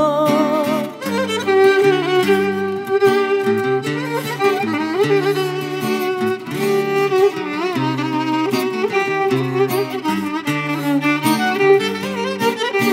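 Violin playing a rebetiko melody with vibrato over a strummed acoustic guitar accompaniment, an instrumental passage between sung verses.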